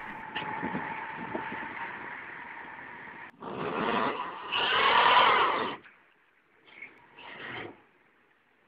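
Engine running under load with a steady whine for about three seconds, then working harder and louder for about two seconds, with its pitch wavering up and down, before dropping to a few faint short sounds near the end; thin, low-fidelity recording.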